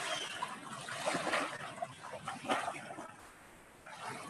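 Sound-art piece played over a video call: a recorded texture of trickling, splashing water with short irregular noises over it.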